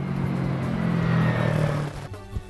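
Street traffic at an intersection: a nearby vehicle engine running with a steady low hum over the hiss of traffic, stopping near the end.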